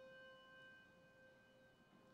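A single struck bell or chime ringing on faintly, its steady tone slowly fading.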